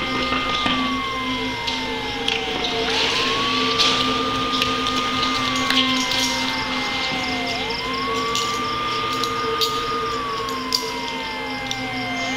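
Emergency siren sound effect in a slow wail. Each cycle sweeps quickly up, holds a high note for a couple of seconds, then slides slowly down, repeating about every five seconds. A steady higher tone and scattered clicks run beneath it.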